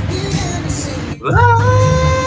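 A song playing: held sung notes over a steady bass line, breaking off briefly about a second in before a new note glides up and is held.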